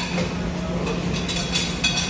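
Steady low hum and rumble of kitchen machinery, with a few light clinks about one and a half seconds in.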